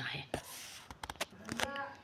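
A woman's quiet, breathy sounds between spoken phrases: an in-breath, a few mouth clicks, and a short soft voiced sound near the end.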